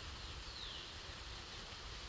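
Quiet rural outdoor ambience: a low rumble, with one faint, falling bird whistle about half a second in.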